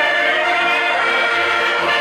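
Several Portuguese concertinas (diatonic button accordions) playing a tune together, a full, steady wash of held reed chords.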